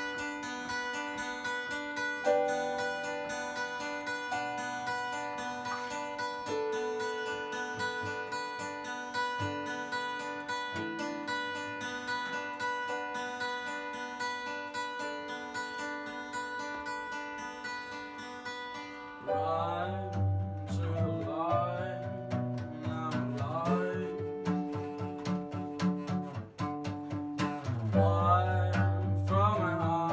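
A live acoustic band: two acoustic guitars strumming over sustained keyboard chords, with a cajón. About two-thirds of the way through, a voice starts singing and the low end fills out, so the music gets louder and fuller.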